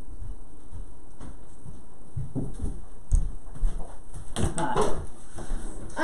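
Household knocks and bumps of someone moving about and coming up to the table. They are sparse at first, then busier and louder over the last two seconds.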